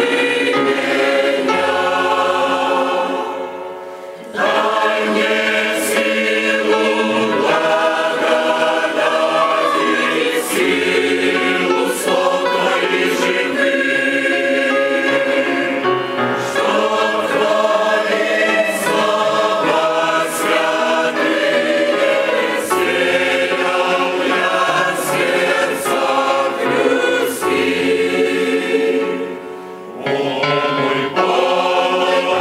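Large mixed choir of men and women singing a hymn in parts, with short breaks between phrases about four seconds in and again near the end.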